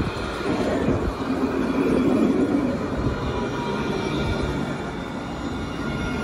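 Alstom Citadis low-floor tram running past at close range: a steady rolling rumble with a faint high whine, easing slightly after the middle.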